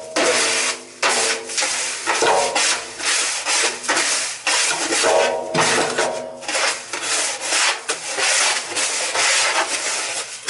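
Gloved hand rubbing Speedy Dry clay absorbent granules against the inside of an emptied steel oil tank: a gritty scraping in repeated strokes with short pauses between them, as the granules soak up the leftover oil sludge.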